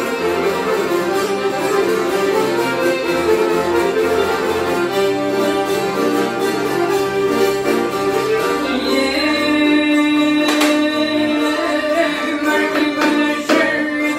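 A live Albanian folk ensemble playing instrumental music, with violin, accordion and a long-necked lute together. From about nine seconds in, a long held note stands out above the band.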